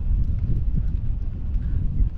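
Wind buffeting the microphone outdoors: a loud, uneven low rumble with no pitch to it.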